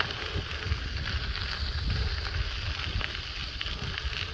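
Wind rumbling on the microphone of a moving bicycle, over a steady hiss of tyres rolling on a dirt road, with a few faint ticks.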